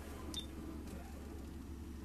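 Quiet car cabin with a low steady hum and a faint short click with a brief high beep about half a second in: a car stereo button pressed while skipping to another track.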